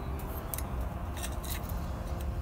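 Bonsai scissors snipping thin twigs of a Beni chidori Japanese maple during pruning: about four short, sharp cuts over a steady low rumble.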